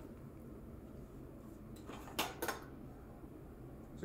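Quiet room tone broken by two sharp knocks about two seconds in, a quarter second apart.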